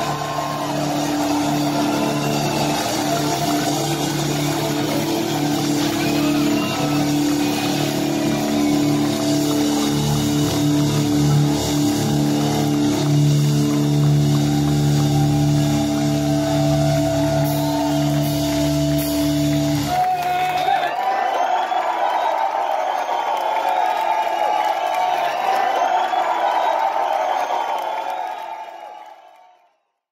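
A heavy metal band holds the final notes of its closing song, then stops abruptly about two-thirds of the way through. A large crowd cheers and shouts, and the sound fades out at the end.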